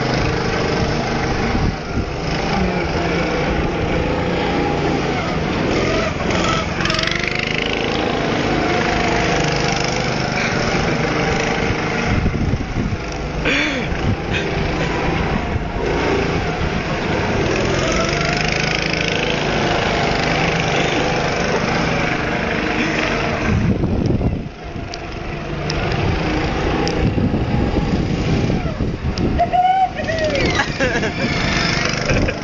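Small petrol go-kart engines running as two karts race around a track, their pitch rising and falling with the throttle as they lap. The sound dips briefly about three quarters of the way through.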